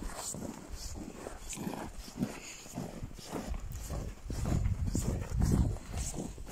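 Footsteps crunching on packed snow at a walking pace, about two steps a second, with a low rumble on the microphone that grows louder in the second half.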